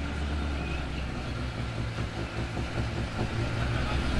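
A Lada 2107 rally car's engine idling on the start ramp, a steady low running note.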